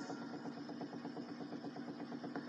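Cassette player running through a blank stretch of tape: faint hiss and a low motor hum with a fast, even flutter of about ten pulses a second.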